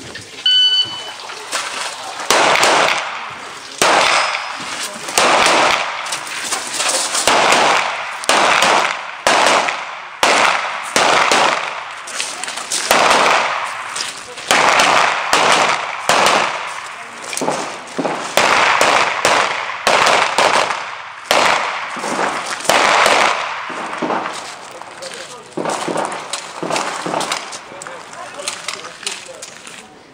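Electronic shot timer's start beep, then a long string of pistol shots fired in quick clusters with short pauses between them for movement and reloads, ending about 23 seconds in.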